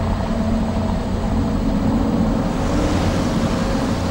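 A steady, deep rumbling drone with a rushing hiss that swells louder in the second half.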